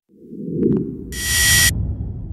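Logo-reveal sound effects: a low rumbling whoosh that swells in, joined about a second in by a brief bright hiss with a high ringing tone.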